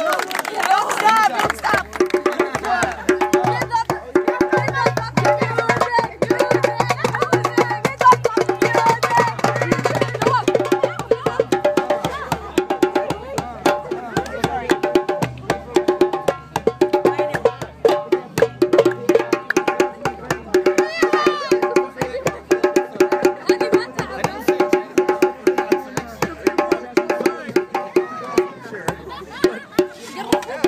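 Hand drums, a djembe-style goblet drum among them, playing a fast, steady rhythm of dense strikes, with crowd voices mixed in.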